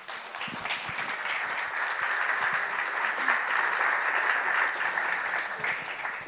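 Audience applauding, swelling over the first second or two, holding steady, then fading out near the end.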